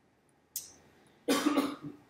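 A woman coughs into a close handheld microphone: a short sharp noise about half a second in, then one loud cough just over a second in.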